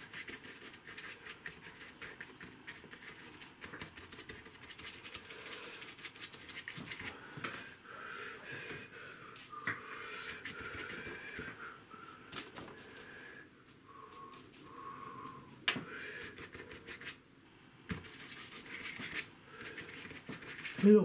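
Paintbrush scrubbing and dabbing acrylic paint onto gesso-primed paper: a quick, irregular run of soft scratchy strokes.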